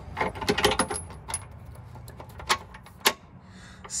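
A long steel bolt being pushed up through a Jeep skid plate and a hole drilled through the frame, metal against metal: a run of light clinks and scrapes in the first second or so, then two sharper clicks near the end.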